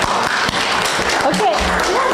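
A small congregation applauding, a dense patter of many hands clapping, with a few voices mixed in.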